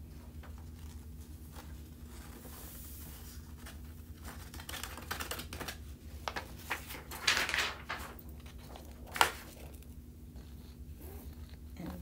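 Sheet of scrap paper rustling and crinkling as it is bent into a funnel to pour excess embossing powder back into its jar, with a louder rustle about seven seconds in and a sharp tap about nine seconds in.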